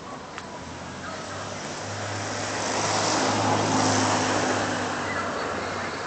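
A road vehicle passing by, its engine hum and road noise swelling to a peak about halfway through, then fading away.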